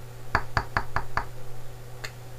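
A quick run of about six sharp clicks or knocks, a little under a second long, over a low steady hum.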